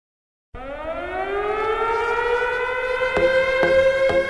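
An air-raid siren sound in an electronic dance track: it starts suddenly, winds up in pitch and levels off into a steady wail. About three seconds in, a drum beat enters under it at roughly two beats a second.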